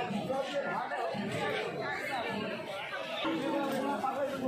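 Background chatter of several voices talking at once, with no single clear speaker.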